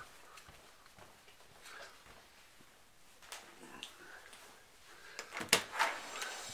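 Quiet room with a few light clicks, then a short cluster of sharp clicks and knocks near the end.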